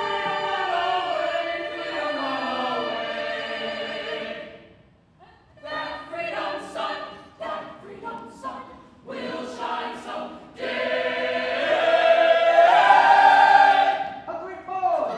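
Musical-theatre cast chorus singing: a held chord that slides downward, a brief break about five seconds in, a run of short clipped phrases, then a loud sustained final chord that swells and rises near the end.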